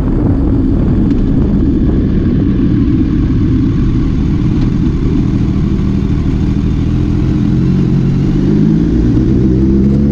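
BMW K1200R inline-four motorcycle engine running at low revs through a bend, with wind noise on the microphone. Over the last few seconds the engine pitch rises steadily as the bike accelerates.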